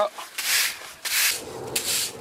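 Broom bristles sweeping over an asphalt surface in several brisk strokes, each a short scratchy swish.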